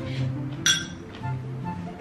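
A metal spoon clinks once against a ceramic bowl, a single short bright ring about a third of the way in, over background music.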